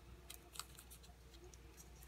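Near silence with faint rustling and a couple of soft clicks from paper slips being handled and folded.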